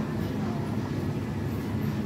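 Steady low background rumble of a supermarket, with no distinct events.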